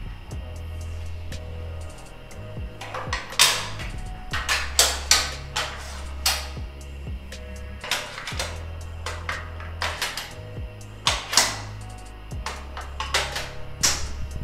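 Metal character dies clinking and clacking as they are set one by one into a metal plate-press jig. The clicks are sharp and irregular, heard over background music with a steady bass.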